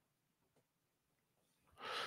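Near silence, with a faint intake of breath near the end.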